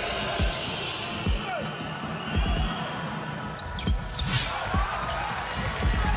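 Basketball dribbled on a hardwood court: single low thumps roughly a second apart over steady arena crowd noise, with a brief hiss a little past the middle.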